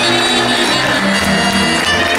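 Romanian folk band music: a wind instrument plays the melody over electronic keyboard accompaniment, in an instrumental phrase between sung lines.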